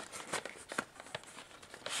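Cardboard model-locomotive box and its paper contents being handled: light scattered clicks and rustles as the packaging is opened.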